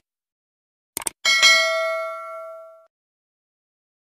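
Subscribe-button animation sound effect: a quick double mouse click about a second in, then a bright bell ding that rings and fades out over about a second and a half.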